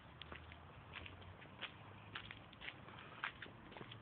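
Faint, irregular light taps and clicks of footsteps on a paved path.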